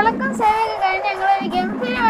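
A high voice singing a slow melody in long held notes that waver and bend in pitch. No drumming is heard.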